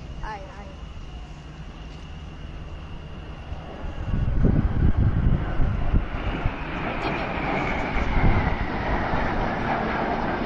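Jet engines of two low-flying jet aircraft passing overhead. The rush builds suddenly about four seconds in and stays loud, with a high whine slowly falling in pitch, and wind buffeting the microphone.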